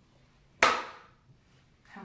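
Homemade balloon-and-paper-cup shooter fired once: the pulled-back balloon snaps against the cup, a single sharp snap about half a second in that launches a cotton ball.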